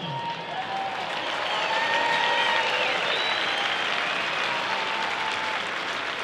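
Stadium crowd applauding steadily, the applause swelling a little over the first two seconds.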